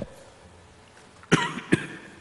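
A person coughing, two quick bursts about a second and a half in, after a second or so of quiet room tone.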